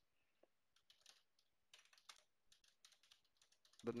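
Faint typing on a computer keyboard: a run of light, quick keystrokes that grows busier from about a second and a half in.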